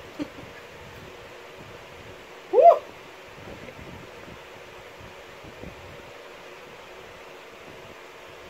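Steady low room hiss, broken once about two and a half seconds in by a short vocal "hoo"-like sound from a person's voice that rises and then falls in pitch.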